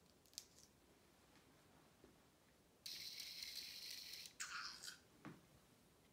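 A faint click near the start as the button on an Ozobot Evo robot is pressed. About three seconds in, the robot's small drive motors whir steadily for about a second and a half as it travels along the line, followed by a short electronic sound from the robot.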